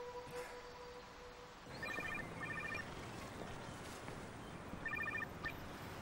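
Phone ringing: two short bursts of rapid electronic beeps about two seconds in, repeated about three seconds later. A held musical tone fades out in the first second and a half.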